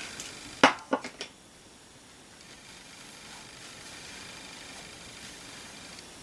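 Three short, sharp knocks about half a second to a second in, the first the loudest, then a faint steady hiss.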